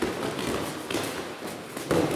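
Two judoka grappling on tatami mats: judogi cloth rustling and bodies shifting on the mat, with a few soft thuds.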